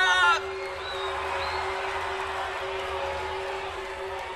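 A man shouting into a microphone to the audience, cut off about half a second in, then a steady crowd noise from the audience with a faint low hum running under it.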